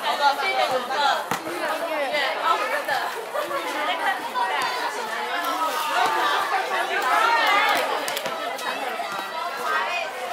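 Many students' voices chattering and calling out at once, overlapping so that no single speaker stands out.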